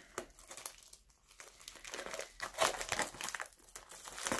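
Metallic foil bubble mailer crinkling as it is handled and turned over: irregular crackles, busiest in the middle.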